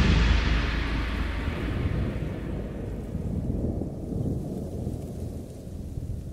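Thunder rumbling and slowly dying away, with rain falling steadily underneath: a storm sound effect inside the recorded track.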